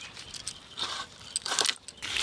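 A large katla fish pressed against a boti's fixed curved iron blade: a few short scraping strokes as the blade cuts through the scaly skin, the loudest in the second half.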